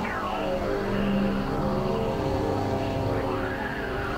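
Experimental synthesizer drone: many sustained tones layered together, with a pitch sweep falling at the start and another rising near the end.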